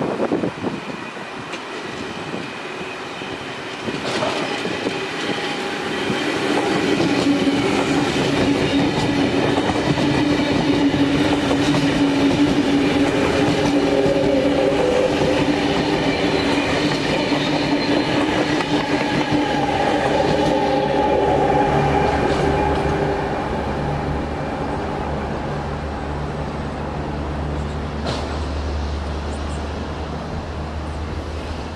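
A double-deck electric intercity train, a NSW TrainLink V-set, runs through the station platform. Its motors give a steady hum of several pitched tones over wheel-on-rail rumble, building from about four seconds in, loudest in the middle and easing off in the last third, when a low drone is left.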